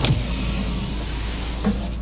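Steady hum inside a car cabin with the engine running, with a short knock right at the start.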